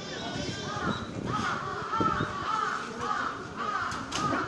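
A crow cawing in a quick run of calls, about two a second, growing louder about a second in.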